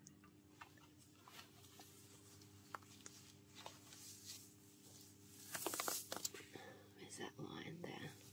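Faint rustling and small clicks of a sheer nylon stocking being handled and pulled up the leg, with a louder crackly rustle about five and a half seconds in, over a steady low hum.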